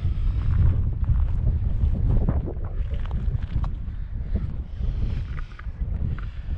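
Wind buffeting the camera's microphone: a low, uneven rumble.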